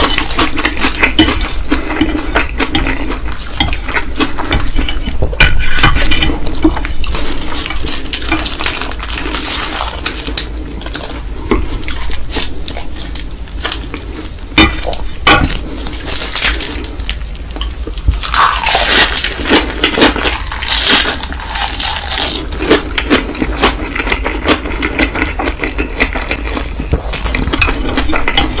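Close-miked eating sounds: Indomie Mi Goreng fried instant noodles wrapped in roasted seaweed sheets being bitten and chewed, a dense run of wet mouth clicks and crackles, with an occasional click of wooden chopsticks.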